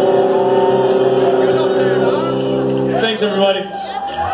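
A live rock band's electric guitars and bass hold a final chord, which cuts off about three seconds in. Voices from the audience follow.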